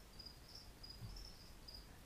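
Near silence: room tone with a faint, high-pitched chirp that comes and goes in short pulses.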